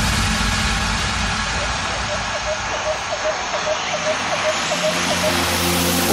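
An electronic dance music transition in a DJ mix: a swept noise wash that narrows and then opens up again over a bass line. A quick run of short blips comes in halfway through, just before the next section's melody.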